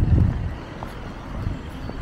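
Outdoor street noise: a low rumble with wind on the microphone, strongest in the first half-second and then steady and lower.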